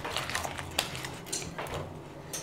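A stick of butter rubbed and smeared around the inside of a glass baking dish, making soft, uneven rubbing sounds with a few light clicks.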